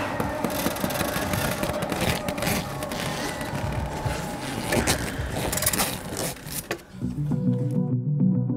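AlterG anti-gravity treadmill being shut down: a steady rushing noise with irregular knocks and clatter, and a faint tone that falls as it winds down. Guitar music comes in about seven seconds in.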